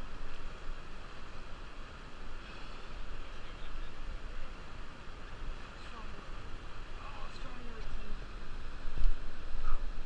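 Steady rush of river water with wind buffeting the microphone, and faint, indistinct voices now and then.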